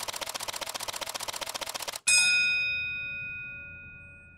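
Title-sequence sound effects: fast, even ticking at about a dozen ticks a second, cut off about two seconds in by a single bright bell-like ding that rings on and slowly fades.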